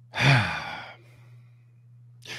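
A man's sigh while searching for his words: a short voiced start that falls in pitch, trailing off as breath within about a second. A faint steady low hum runs underneath.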